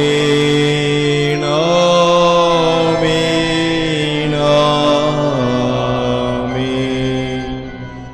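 Liturgical chant sung at the elevation of the host and chalice at Mass: long held notes that slide to a new pitch every few seconds, fading out near the end.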